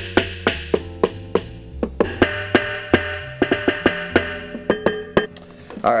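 Drumsticks playing a groove on an Alesis SamplePad 4, its preset kit-one electronic drum sounds heard leaking from headphones together with the sticks' taps on the rubber pads. The hits come about three to four a second, with pitched tones and a low bass under them, and stop about five seconds in.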